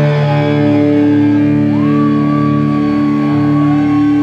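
Live rock band with electric guitars and bass holding sustained, droning notes. About two seconds in, a high note slides up and is held above them.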